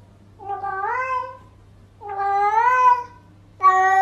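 A domestic cat meowing three times, each meow long and drawn out and about a second apart, with the pitch rising and then falling.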